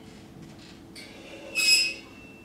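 Metal percussion on a drum kit scraped, giving a brief, loud, shrill metallic squeal near the end that leaves one high tone ringing, after fainter scrapes earlier. Faint sustained grand piano notes lie underneath.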